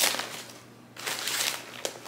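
Brown kraft paper wrapping crinkling and crackling as a package is unwrapped by hand, with a brief lull about half a second in before the rustling picks up again.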